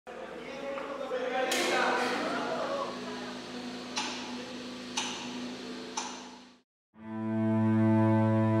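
A short opening passage of music, with a shimmering swell and three sharp hits about a second apart, breaks off into a moment of silence. Then a cello begins a long, steady low bowed note, the loudest sound here.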